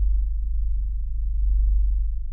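Synthesizer holding a deep, sustained bass note, close to a pure tone with a slight regular pulse, as the final chord of an improvised piece dies away; the higher notes fade out early on.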